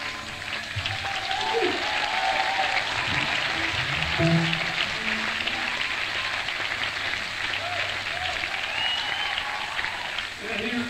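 Theatre audience applauding and cheering as a song ends, with scattered shouts, on an audience-made cassette recording.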